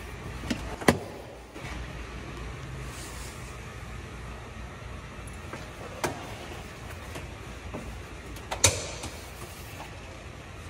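Latch clicks and knocks from the scissor-style door of a 2005 Spyker C8 as it is lifted open and handled: a sharp click about a second in, and further knocks near six and nine seconds.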